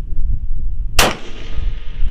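A single sharp shot from a bolt-action precision rifle about a second in, followed by a short fading echo, over a low wind rumble.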